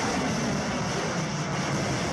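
Rocket motor of a missile during launch: a steady rushing noise.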